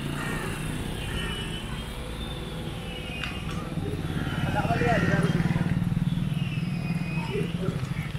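A motorcycle engine passing on the road, growing louder about halfway through and easing off near the end, with voices in the background.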